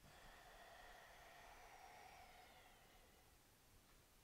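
Near silence: room tone, with a few faint thin tones that sag slightly in pitch through the middle and fade out.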